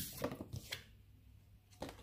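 A deck of tarot cards being shuffled and handled: a few short, faint card clicks in the first second, a quiet stretch, then one more tap just before the end.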